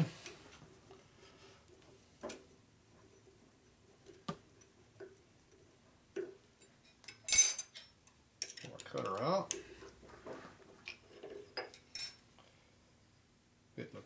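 Scattered metallic clicks and clinks of hand tools on a milling machine as a hex key backs off the boring head's adjustment and the boring bar is taken out. The loudest is a single sharp clink about seven seconds in, with another near twelve seconds.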